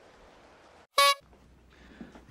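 Faint film background with one brief, loud, steady-pitched tone about a second in, lasting a fraction of a second.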